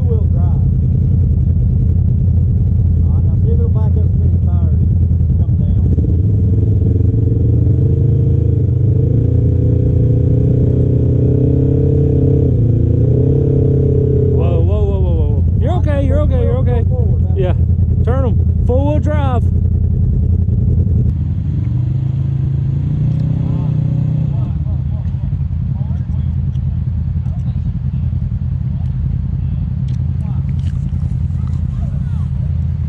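Side-by-side UTV engine running on a rock ledge. Its pitch climbs and holds higher for several seconds in the first half as it revs, and a voice calls out in the middle. About two-thirds of the way through, the sound drops to a quieter, steady engine note.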